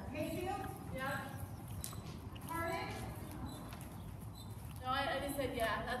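A horse walking on the dirt footing of an indoor riding arena, its hoofbeats heard under people's voices.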